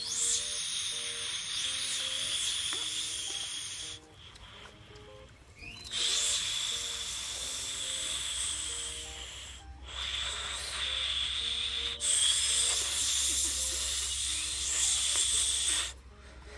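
A loud, high, steady hissing drone that cuts off and resumes abruptly several times, with soft background music of short stepped notes underneath.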